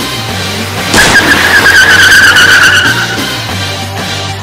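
Tire screech sound effect over background music: a loud squeal starts about a second in and lasts about two seconds, sliding slightly down in pitch.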